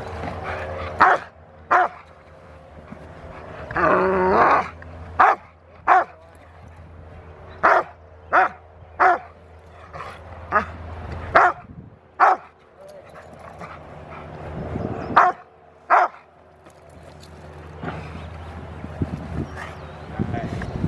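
Rottweiler barking in short, sharp barks, mostly in pairs, about a dozen in all, with one longer drawn-out bark about four seconds in. It is barking at a helper during protection bite work.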